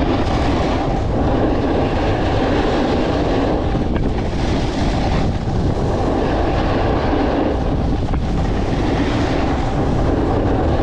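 Wind buffeting an action camera's microphone at speed, mixed with edges scraping and sliding over groomed snow during a downhill run: a loud, steady rush with brief swells of hiss.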